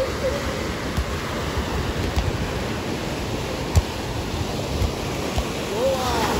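Small waves breaking and washing up onto a sandy beach, a steady surf wash. A single short thump stands out about four seconds in.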